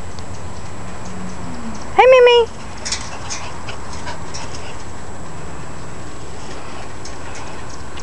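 A small dog's collar tags jingling, with light clicks against a chain-link fence, as a schipperke moves about and stands up against the fence. One short high-pitched call comes about two seconds in, just before the jingling.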